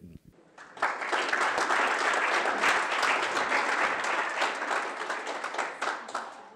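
Audience applauding, breaking out about a second in and holding steady before fading near the end.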